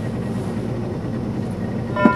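Steady low hum of a small motorboat's engine running at idle.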